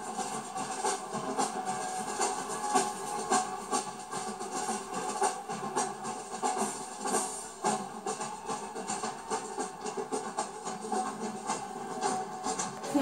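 Marching drumline playing a steady rhythm on snare drums, bass drums and cymbals, heard through a television's speaker.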